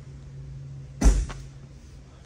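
An exterior storage-compartment door on a Class A motorhome thuds once about a second in, with a fainter latch click just after, over a steady low hum.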